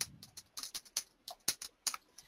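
Computer keyboard keys clicking as a word is typed, about a dozen quick keystrokes.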